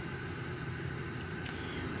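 Steady low hum inside a car cabin, with one faint click about one and a half seconds in.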